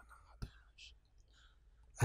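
Near silence in a pause of a man's spoken prayer: a faint click about half a second in, then soft breath sounds from the speaker.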